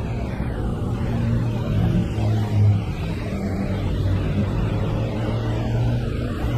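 Low, steady rumble of city road traffic with engine hum, swelling briefly a little past two seconds in.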